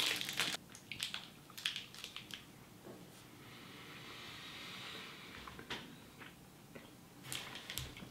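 Faint mouth sounds of two people biting and chewing pieces of a Reese's Fast Break candy bar (chocolate, peanut butter and nougat), with scattered small crackles and clicks.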